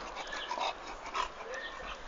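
English bulldog close to the microphone, breathing with its mouth open, with faint short sounds and a couple of brief thin tones about half a second and a second and a half in.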